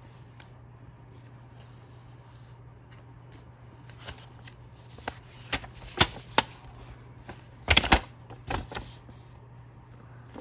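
Folded paper quick start leaflet being unfolded by hand: soft rustling with a sharp paper snap about six seconds in and a louder crackle near eight seconds, over a faint steady hum.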